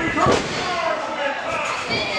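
A wrestler's kick landing on his opponent with one sharp smack shortly after the start, with voices shouting over it.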